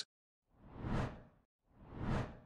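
Two soft whoosh sound effects about a second apart, each swelling up and fading away, accompanying an animated transition in a channel promo.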